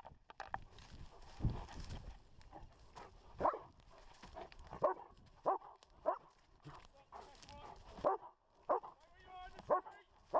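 Police dog barking repeatedly and close up, a short bark about every half-second to second from about three seconds in, as it indicates a hidden person it has found. Before the barking, rustling and rubbing as the dog's head-mounted camera moves through undergrowth.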